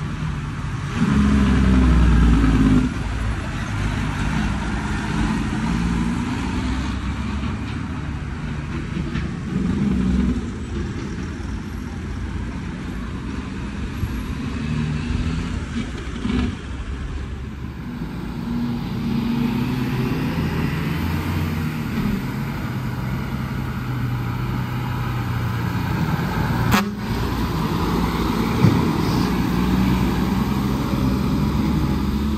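Road traffic: cars and heavy trucks driving past close by, their engines running, with a louder stretch of low engine sound about a second in. A single sharp click a few seconds before the end.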